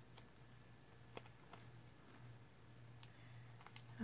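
Near silence: room tone with a few faint, scattered clicks, one slightly louder about a second in.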